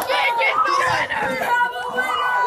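Several young people shouting and yelling at once, their high, excited voices overlapping with no clear words.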